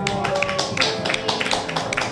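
Audience clapping just as a song finishes: a dense, irregular patter of hand claps right after the final guitar chord and singing stop.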